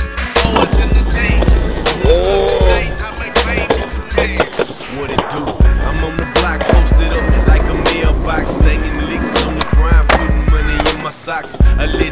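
Skateboard on concrete, its wheels rolling and the board clacking sharply several times, over a hip-hop beat with heavy, pulsing bass.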